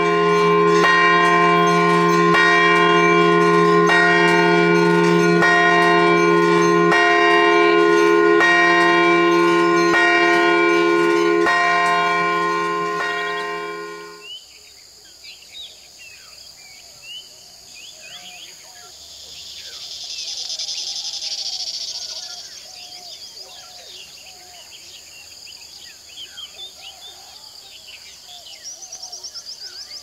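Temple bells ringing loudly and without a break, struck over and over, then cutting off suddenly about halfway through. What remains is a quiet evening background of chirping insects and birds.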